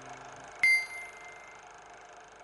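A single high, bell-like ding about half a second in that rings out and fades over about a second, following the dying tail of a music chord.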